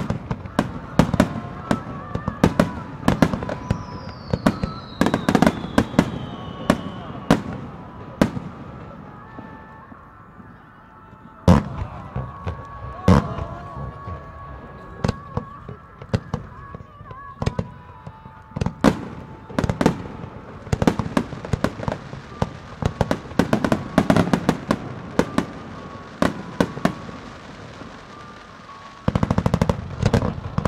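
Starmine fireworks bursting in rapid, dense barrages of sharp bangs and crackles over a river, with music playing from loudspeakers underneath. A falling whistle comes a few seconds in, and after a brief lull a single big bang comes just before the middle.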